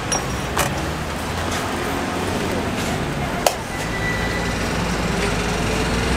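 Steady rush of an electric fan blowing air over a charcoal grill to liven the coals, with a few sharp clicks from the metal grill.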